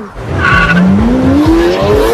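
Car engine revving hard, its pitch climbing steadily for about a second and a half with tyre noise, then cutting off.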